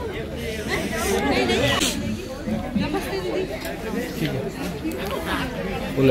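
Several people talking at once, indistinct chatter of a small crowd in a room.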